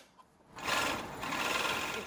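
Overlock (serger) sewing machine running at speed, stitching and trimming a fabric edge; it starts about half a second in and runs steadily.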